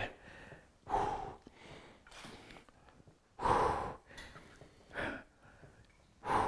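A man breathing hard through the effort of seated overhead dumbbell presses: short, forceful exhales about every second and a half, the loudest a little past the middle.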